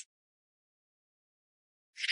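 Silence: a gap of dead air between narrated lines.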